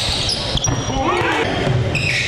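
Live gym sound of a basketball game: a ball bouncing on the hardwood court amid indistinct players' voices.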